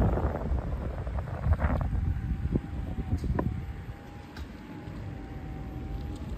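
Kingsong 16S electric unicycle rolling over asphalt on its larger 16×2.5 tyre: a low rumble of tyre and wind on the microphone, with no scraping of the tyre against the cut-out shell. A thin steady whine comes in about two seconds in, with a couple of light clicks.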